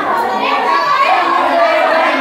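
A classroom of teenage students calling out loudly over one another, many voices overlapping at once, as they clamour to answer a quiz question.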